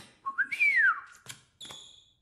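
A single whistled note that glides up and back down. It is followed by a sharp click and then a short, bright chime that rings briefly near the end.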